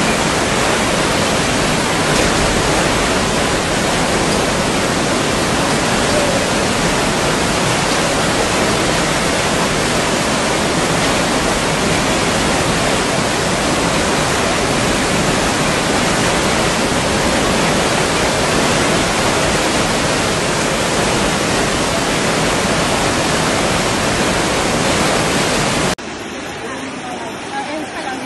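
Fast-flowing floodwater rushing through a street: a loud, steady, even roar of water that never lets up.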